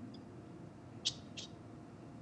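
Quiet background hum and hiss of an open remote-meeting audio line, with two faint short clicks about a second in.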